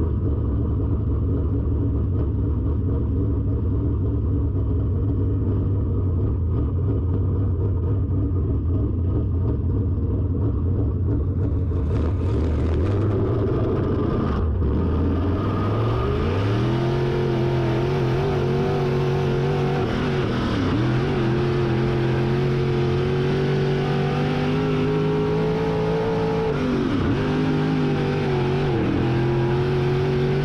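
Dirt late model race car's V8 engine running on track: steady low running at first, then climbing in pitch about halfway through as the car accelerates, with a few brief dips in pitch near the end as the throttle is lifted.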